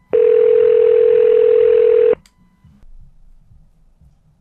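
Telephone dial tone: one loud steady tone for about two seconds that cuts off suddenly. Faint line noise follows.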